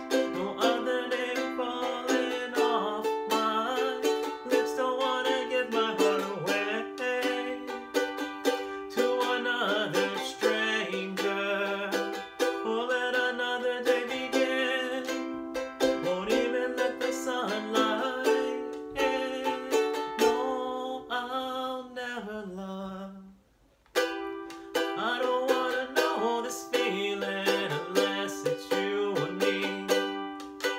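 Ukulele strummed in steady chords, with a short break about 23 seconds in before the strumming picks up again.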